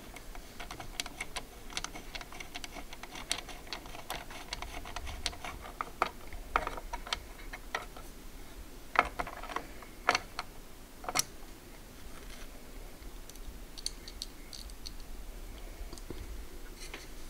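Small irregular clicks and taps of a screwdriver driving M3 machine screws into a CPU cooler's metal mounting bracket on a motherboard, with a few sharper clicks about nine to eleven seconds in.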